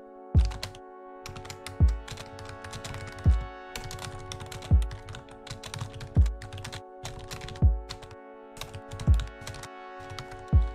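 Live-coded electronic music: a synthesized kick drum with a falling pitch thumps seven times, about once every second and a half, over a steady sustained drone chord. Computer-keyboard typing clicks over it as the next kick pattern is entered.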